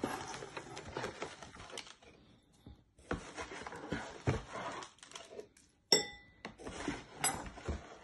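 Rustling of oats being scooped from an open cereal box with a metal tablespoon, then a sharp ringing clink of the spoon against a ceramic bowl about six seconds in, and a lighter clink a little later.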